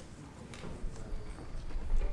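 A lull with no music playing: a few light knocks and rustles in the hall, with a low rumble growing near the end.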